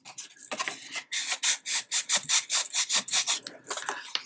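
Fingers rubbing firmly back and forth over cardstock, creasing it down over the inner edge of a card frame. Heard as a quick, rhythmic run of short scratchy rubbing strokes, strongest from about a second in.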